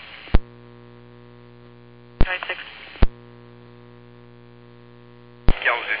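Public-safety dispatch radio heard through a scanner: a sharp click as a transmission keys up, then a steady hum of an open channel with no voice on it. About two seconds in, a brief burst of voice is framed by two more clicks, and the hum returns until another click near the end, where a voice transmission begins.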